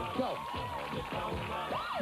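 Game-show background music under the host's shouted encouragement. Near the end comes a quick rising then falling tone: the correct-answer sound cue, as the contestant's score goes to one.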